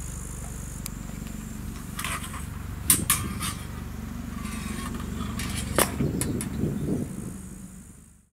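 Steel swords binding and a buckler struck in a sword-and-buckler exchange. Short sharp clacks come in two clusters, around two to three seconds in (the loudest near three seconds) and again near six seconds.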